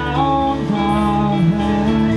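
Teenage rock cover band playing live through a PA: guitars and keyboard with a sung lead vocal over them.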